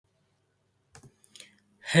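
A few soft computer mouse clicks about a second in, in an otherwise quiet room.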